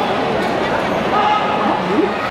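Loud voices calling and shouting over a steady din, with short held cries.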